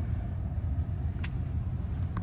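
Steady low rumble inside a car's cabin, with one light click a little over a second in.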